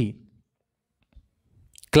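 A man's speech ends just after the start, then about a second and a half of near silence with a faint single click, and he starts speaking again near the end.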